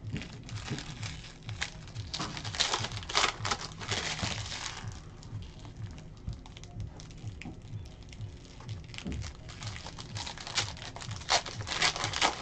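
Shiny foil trading-card pack wrappers crinkling and cards being handled and flicked through, in a dense run of crackles over the first five seconds, then sparser ticks and rustles. Faint background music with a steady low beat underneath.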